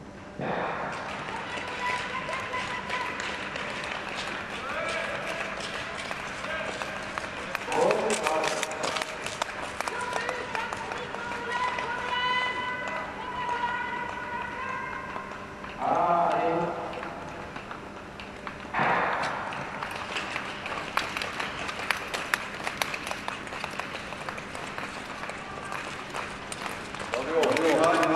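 Indistinct voices at the rink, with loud calls or shouts about 8, 16 and 19 seconds in.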